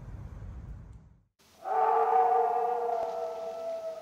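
A low outdoor rumble cuts off about a second in. After a brief silence, a long drawn-out howl with several held pitches starts, rising slightly at first, then holding steady and fading near the end: a werewolf-style howl sound effect.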